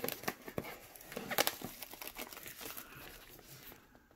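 Plastic shrink-wrap crinkling and tearing as it is pulled off a cardboard product box, with small crackles and clicks that die away near the end.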